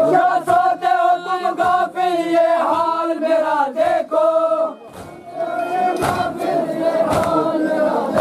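A crowd of men chanting an Urdu noha (mourning lament) in unison, with sharp chest-beating (matam) strikes about once a second. The chant breaks off briefly a little past the middle, then resumes.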